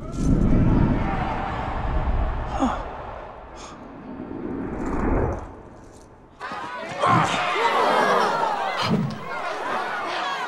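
Film fight sound design: a sudden deep rumble that swells and fades over about five seconds. Then, from about seven seconds in, a crowd of students shouting and clamoring.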